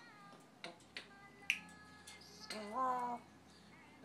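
African grey parrot vocalising as it tries to sing: a few sharp clicks and faint whistled notes, then a louder, drawn-out call that rises in pitch and holds for under a second, about two and a half seconds in.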